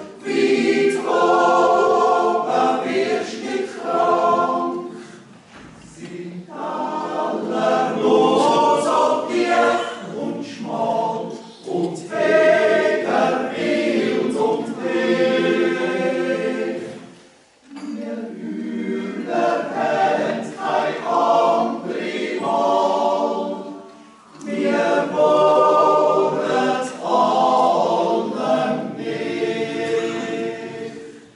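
Swiss yodel club choir singing a cappella in sustained chords. It sings in phrases of about six seconds, with a brief pause between each phrase.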